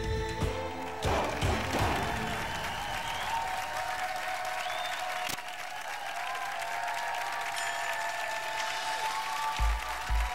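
Game-show theme music ends about a second in, then a studio audience applauds and cheers.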